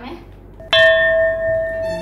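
A single bell chime sound effect: one sudden ding about three quarters of a second in that rings on and slowly fades.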